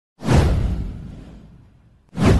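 A whoosh sound effect with a deep bass rumble under it, swelling in suddenly a fifth of a second in and fading away over the next second and a half.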